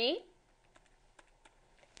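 Faint, irregular clicks and taps of a stylus on a pen tablet's surface as a short line of math is handwritten.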